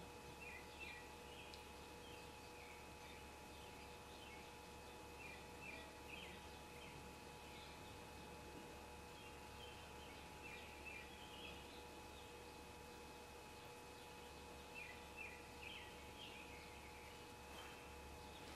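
Near silence: room tone with a faint steady hum and scattered faint, short high chirps in small clusters.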